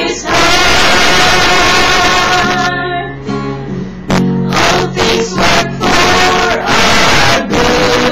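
Small mixed group of women's and men's voices singing a song together in unison, with acoustic guitar accompaniment. There is a short break between phrases about three seconds in.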